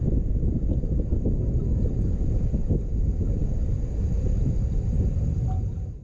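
Steady low rumble of wind buffeting the microphone of a bow-mounted camera on a narrowboat under way, fading out at the very end.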